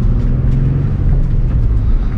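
Nissan 350Z's 3.5-litre V6 engine heard from inside the cabin, pulling under acceleration. Its note climbs a little, then drops near the end at a gear change.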